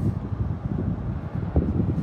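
Wind buffeting the microphone: an uneven low rumble, with a single short knock about one and a half seconds in.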